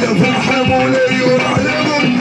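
Live Moroccan chaabi music: jingled frame drums and a drum kit keep the beat under a gliding melody line.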